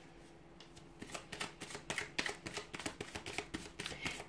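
Tarot cards being shuffled by hand: a rapid, irregular run of card flicks and slaps that starts about a second in, after a quiet moment.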